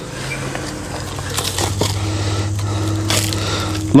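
Stretch-wrap film unwinding off the roll of a firewood bundler as a bundle of split wood is pushed through the hoop. It makes a steady, loud crackling buzz that builds over the first second and stops suddenly near the end. The owner calls this Uline film much louder than the quiet kind and puts the noise down to how the plastic is made.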